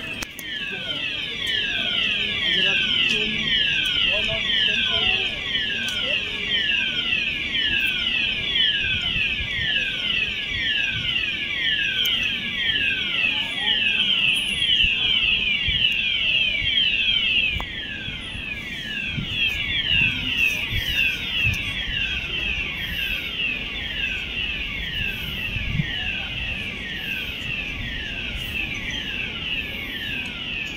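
Building fire alarm sounder of a department store's fire alarm system, still sounding after a fire inside. A loud, repeating falling sweep, about two a second, a little quieter from about halfway.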